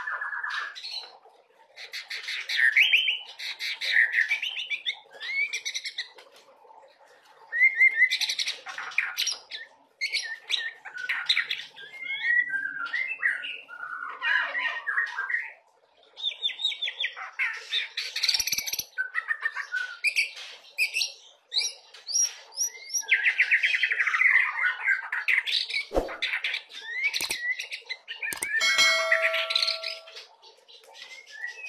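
A young white-rumped shama (murai batu, at the juvenile 'trotolan' stage) singing in bursts. Its varied song of clear whistles, rapid trills and chattering phrases is broken by short pauses, and mimicked phrases ('isian') are worked into it.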